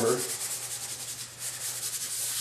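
Hands rubbing a freshly glued paper pattern flat onto blue painter's tape over a wooden board: a dry swishing of palms on paper in quick, repeated strokes.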